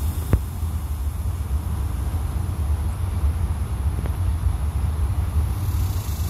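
Steady low rumble with no clear pitch, and a single sharp click shortly after the start.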